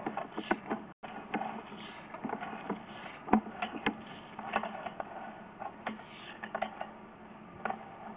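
Sewer inspection camera's push cable being fed by hand into a drain line: irregular light clicks, knocks and rubbing as the rod and camera head advance, over a faint steady hum.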